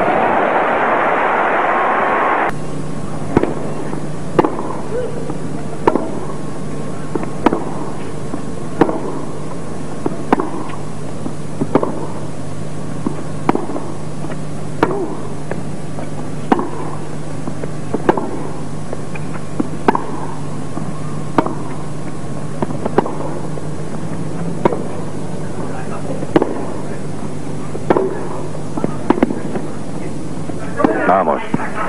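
Tennis racquets striking the ball in a long baseline rally, one sharp hit about every second and a half, over a steady low hum. It opens with a loud wash of crowd noise that cuts off about two seconds in.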